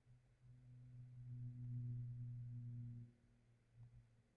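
A person humming one steady low note, "mmm", for about two and a half seconds, while drawing.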